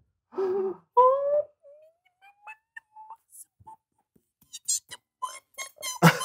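A person gasps and makes a soft rising 'ooh' of delight, followed by a few faint, scattered sounds and a quick run of light clicks and taps near the end.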